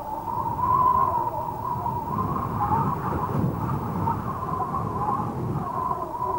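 Wind howling: a wavering, whistling tone over a low rumble, steady throughout.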